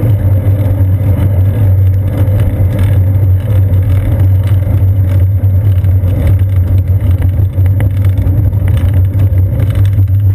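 Steady, loud low rumble of wind buffeting and road vibration picked up by a seat-post-mounted action camera in its housing on a moving bicycle.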